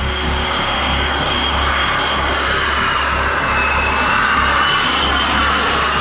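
Jet aircraft engine noise: a steady rush with a high turbine whine that dips and rises slightly in pitch, swelling a little in the second half.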